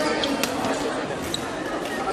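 Badminton racket striking a shuttlecock: a sharp crack about half a second in, with a fainter click just before, over the chatter of a crowded sports hall.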